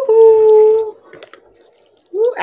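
A woman's voice holding a long, steady "ooh" exclamation that rises into one pitch and lasts nearly a second. It is followed by a quiet stretch with a few faint small clicks.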